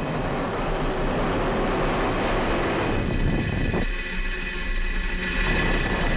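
Falcon 9 first stage's nine Merlin engines firing at full power just after liftoff, a loud, steady, dense noise. About four seconds in it drops and thins out, with a few steady high tones over it.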